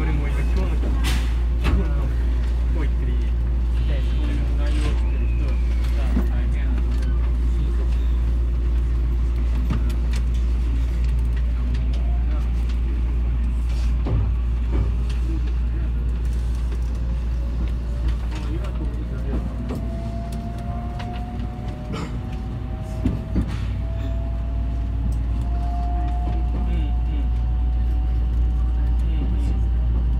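JR West 223 series electric train pulling away from a station, heard from the cab: a steady low hum with scattered clicks from the wheels. From a little past halfway, a motor whine rises steadily in pitch as the train gathers speed.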